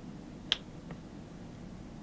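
A single sharp finger snap about half a second in, keeping time for an unaccompanied song, over faint room hiss.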